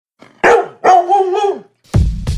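A dog barking: one short bark, then a longer drawn-out bark that falls in pitch at the end.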